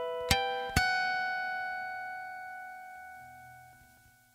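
Two plucked guitar notes, a third of a second and three quarters of a second in, ring on together and fade slowly away over about three seconds.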